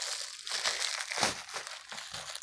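Bubble-wrap plastic packaging crinkling and rustling as it is handled and pulled open, with a few louder crackles along the way.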